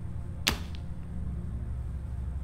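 A single sharp swish, a stab sound effect, about half a second in, over a low steady hum.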